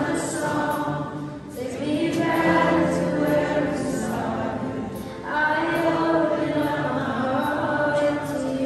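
Live worship band playing a song, with several voices singing together over acoustic guitars, bass, violin and drums. The sung phrases break briefly about one and a half seconds in and again near five seconds.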